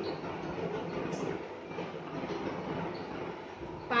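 Steady low rumbling background noise, with no clear rhythm or break.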